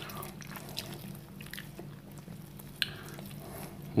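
Faint wet squishing as a large bakso meatball is handled in gloved hands, with broth dripping off it into the bowl, and one sharp click about three seconds in.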